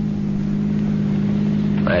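Car engine running at a steady speed, a low, even drone heard as a radio-drama sound effect.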